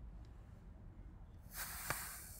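Galton board turned over: its small beads stream down through the rows of pins with a steady hiss that starts about one and a half seconds in, with a single click near the end.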